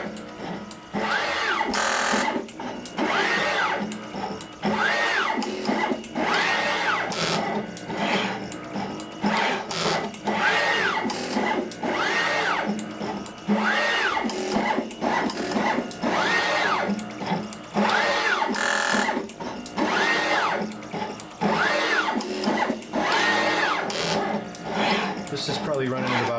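NeoDen TM245P desktop pick-and-place machine running with both pick heads at 60% of full speed. The gantry motors whine up in pitch, hold and drop back with each move, every second or two, with sharp clicks between moves.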